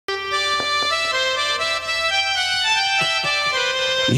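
A keyboard instrument with a reedy, harmonium-like tone playing a melody of held notes, joined by a few drum strokes about half a second in and again around three seconds in.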